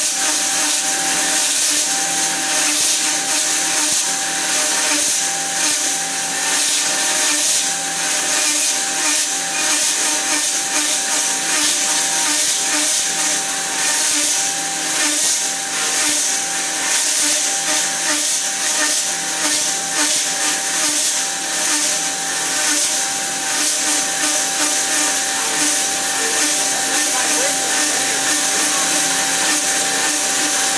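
Metal-cutting band saw running steadily with its blade sawing through a solid metal bar, a steady whine over the hiss of the cut.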